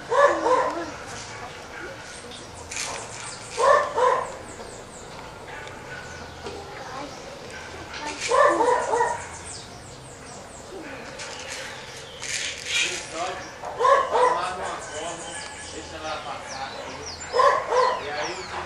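A dog barking in short clusters of two or three barks, about every four seconds, five times in all.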